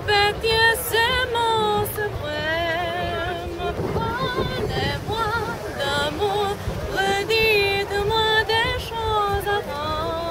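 A high female singing voice holding long, wavering notes with wide vibrato, over a low background rumble.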